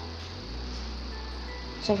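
A steady low hum with a faint hiss during a pause in talking, and no handling clicks or knocks.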